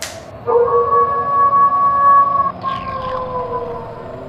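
A long, eerie held tone in two parts: one steady note from about half a second in, then after a brief break near the middle a second, slightly lower note that slides slowly downward.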